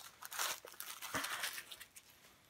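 Plastic shrink wrap from freshly opened card decks crinkling and rustling as it is handled, in irregular bursts with a few small clicks.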